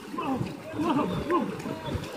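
Several people's voices calling and shouting in gliding, drawn-out cries, over the steady churn and splash of water around people wading with push nets.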